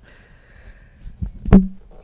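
A single sharp knock about one and a half seconds in as a boxed appliance, a turkey roaster in its cardboard carton, is lifted and handled; otherwise only low room noise.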